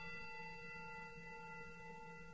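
A struck meditation bell ringing on after the strike, several steady overtones held together and fading slowly, faint.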